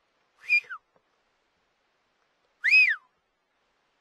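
Two short, high whistle-like calls about two seconds apart, each rising and then falling in pitch; the second is longer and louder.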